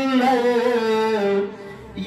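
A man's voice chanting a melodic phrase into microphones, with long held notes; the phrase ends about a second and a half in, and after a short breath the next phrase begins.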